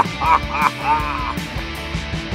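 Cartoonish laughter, three short honking "ha" syllables in the first second and a half, over background music.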